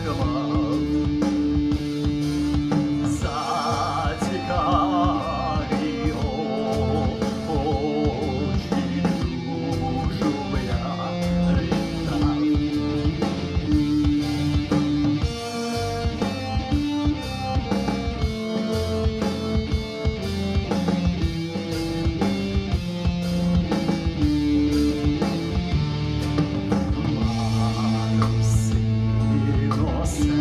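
Electric guitar playing a single-note melody line over a steady backing drum beat, an instrumental passage within a song.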